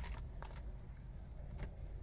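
Quiet car-cabin background: a faint steady low rumble, with two soft clicks, one about half a second in and one near the end.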